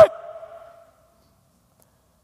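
A man's speaking voice finishing a word and trailing off within about a second, then silence.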